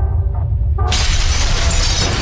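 Intro sound effects for an animated logo: a deep rumbling bed with a few held tones, then about a second in a sudden loud shattering crash like breaking glass, which goes on as a dense crackling rush over the rumble.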